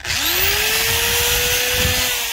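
Corded electric drill, powered through the homemade solar power station's inverter, spinning up quickly as the trigger is pulled and then running steadily at full speed. It shows the inverter carrying the drill's load.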